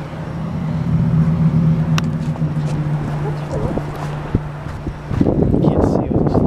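A steady low mechanical hum, then from about five seconds in, wind buffeting the camera microphone with a rough rumble.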